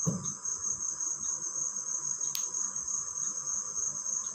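A soft thud at the very start as the feet come down to the floor out of a headstand, then a steady high-pitched trill throughout, with one sharp click a little past halfway.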